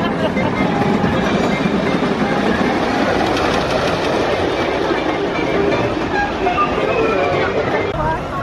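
Train of a Custom Coasters International junior wooden roller coaster running steadily along its wooden track, with riders' voices over it.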